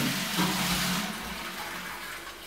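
High wall-mounted toilet cistern flushing through a pull string: water rushing down the pipe into the bowl, the rush thinning out about a second in.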